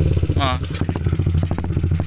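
Yamaha LC135's single-cylinder four-stroke engine idling through an Espada open aftermarket exhaust, a steady rapid exhaust pulse.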